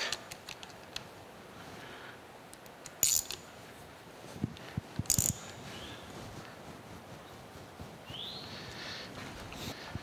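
Chuck key tightening a three-jaw chuck on a milling-machine dividing head: a few sharp metal clicks and clinks, the clearest about three and five seconds in, and a short rising squeak near the end.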